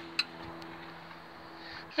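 A faint, steady low hum with a single sharp click just after the start.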